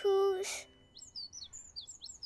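A small cartoon bird chirps a quick string of short, high tweets, starting about halfway in. The chirps are taken as the bird saying thank you. A brief voiced 'oh' comes first.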